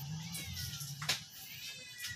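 Domestic cat meowing softly, with a sharp click about a second in.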